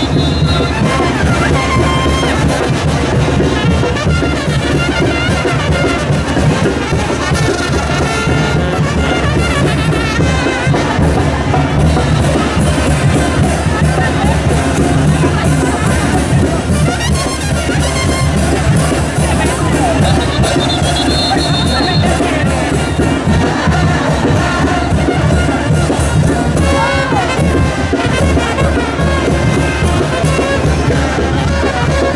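Brass band playing the chinelo dance tune, loud and continuous, with trumpets, trombones and drums.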